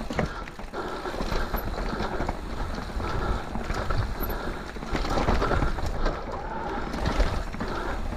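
Intense Tazer MX electric mountain bike rolling down a rough dirt singletrack: steady tyre noise on dirt and rock with frequent uneven knocks and rattles as the bike goes over roots and bumps.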